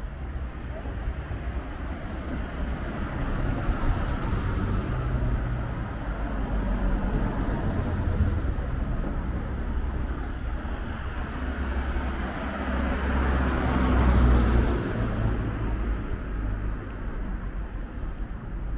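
City street traffic: cars passing close by with a low tyre-and-engine rumble that swells as each goes past, loudest around four seconds in and again near fourteen seconds.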